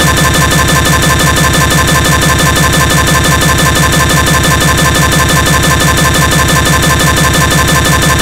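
A stuck digital audio loop from a camera's failing WAV recording: a tiny fragment of sound repeats over and over, many times a second, as a loud, steady, machine-like buzz. It cuts in abruptly at the very start, replacing the electronic music.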